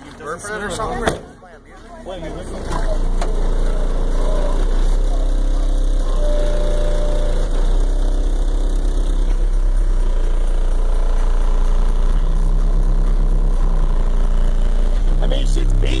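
Car subwoofer (Audioque HDC4) in a trunk box, wired at 2 ohms, playing bass-heavy music loud from about two and a half seconds in: a deep, steady low note under bass notes that shift every second or two.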